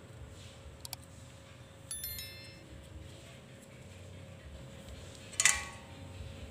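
Quiet room with a faint steady hum, a couple of small clicks, and two brief metallic chime-like rings: a cluster of high ringing tones about two seconds in and a louder clink near the end.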